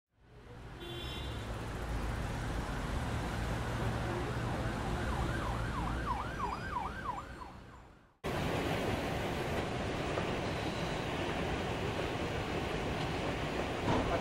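Street traffic rumble fading in, with an emergency-vehicle siren yelping rapidly up and down for a few seconds in the middle before everything fades out. Then, after a sudden cut, a steady hiss of background noise.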